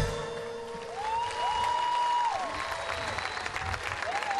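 Audience applause after a song ends, with one held note of the music fading out over the first two seconds. Long calls from the crowd rise, hold and fall above the clapping.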